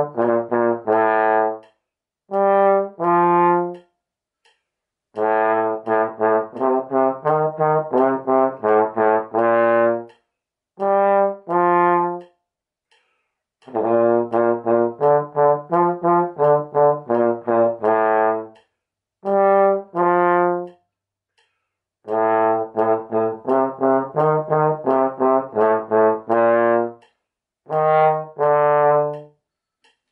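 Slide trombone playing a simple Mexican folk tune in three-four time, with short separate notes grouped into phrases that break off for brief rests. The playing stops just before the end.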